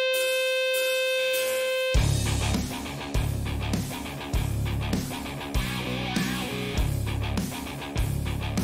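Hard rock recording: a single held note with its overtones opens, then about two seconds in the full band comes in with heavy electric guitars and drums, a strong hit landing roughly every second.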